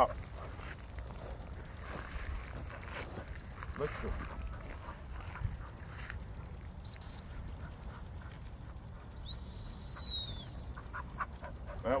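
Dog-training whistle blown twice: a short steady blast about seven seconds in, then a longer blast near the end that rises and falls in pitch. These are the whistle commands calling the spaniel in to sit.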